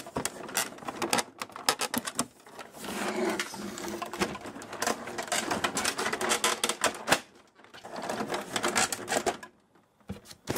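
Plastic housing panels of a Canon MP470 inkjet printer being worked loose by hand: a quick run of clicks and snaps, a stretch of scraping and rattling in the middle, then more clicks near the end.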